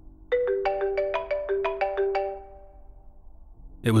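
A mobile phone ringtone: a quick melody of about a dozen short, bell-like notes lasting about two seconds, then dying away.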